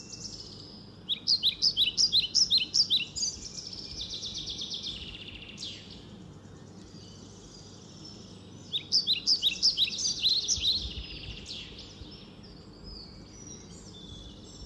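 Birds singing: a rapid run of high chirps about a second in, a softer trill and a single falling note in the middle, then another burst of rapid chirps about nine seconds in.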